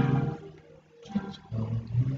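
Acoustic guitar chords strummed and left to ring: a chord fades over the first half-second, then fresh strums come in about a second later.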